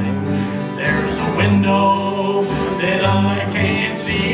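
Acoustic country band playing a slow song: strummed acoustic guitars over plucked upright bass notes, with a sung line faintly in the mix.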